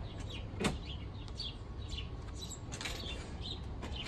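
Heavy-duty locking drawer slides running as loaded aluminum cargo and bike trays are pushed into the van's rear, with a sharp click about half a second in. Birds chirp faintly.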